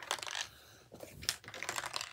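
Light, irregular clicks and taps of a boxed iPad being handled and lifted: several short knocks of fingers and the box against hands.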